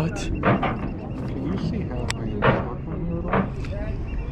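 Indistinct talking, with a single sharp click about two seconds in.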